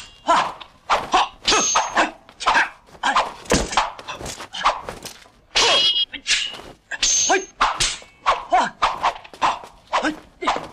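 Sword-fight sound effects from a 1970s kung fu film: a rapid run of blows and swishes, about two or three a second, with several ringing clashes of metal blades and the fighters' shouts mixed in.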